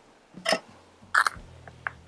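Kitchen knife cutting through a green bell pepper on a wooden cutting board: two short crisp cracks of the pepper flesh, about half a second and a second in, then a couple of faint ticks.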